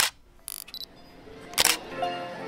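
Logo-animation sound effects: camera-shutter-like clicks and two loud, short sweeping hits about a second and a half apart, with a faint rising wash between them. Music notes begin at the very end.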